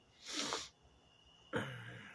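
A man's breathing sounds: a short, breathy exhale, then about a second and a half in, a short voiced cough-like noise from the throat that tails off.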